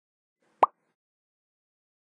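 A single short pop about half a second in.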